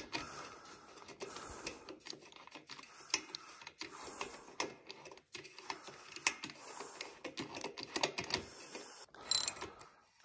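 Light metallic clicking of a spark plug socket and extension being turned by hand as a spark plug is threaded into a small Honda engine's cylinder head. A louder run of clicks comes about nine seconds in, as a ratchet goes onto the extension to snug the plug.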